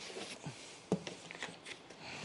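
Faint handling of cardboard packing, with a light knock about a second in and a few soft taps and scrapes after it.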